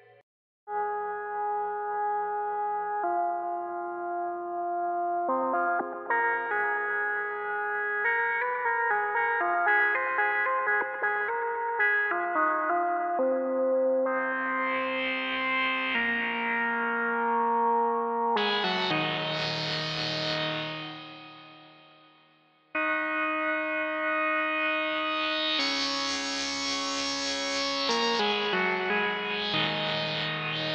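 Dawesome MYTH software synthesizer playing its 'Motor City' factory preset through saturation and delay: a run of sustained chords that change every second or two, with a bright swell that rises and falls in the upper range. The sound fades out about two-thirds of the way through and comes back a second later with another bright swell.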